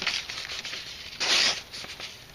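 A freshly sharpened knife blade slicing through a sheet of paper: faint paper rustling, then one short, loud slicing hiss a little over a second in, a test of the edge's sharpness.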